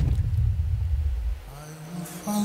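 A low rumble from a film soundtrack played over a hall's loudspeakers, right after the music cuts off. It fades about a second and a half in, and a low held note starts near the end.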